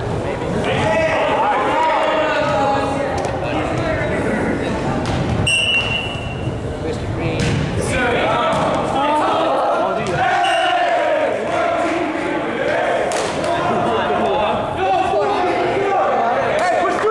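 Players' voices echoing around a gymnasium, with a ball bouncing on the hardwood floor now and then. A referee's whistle gives a short steady blast about five and a half seconds in, and a briefer one near the middle.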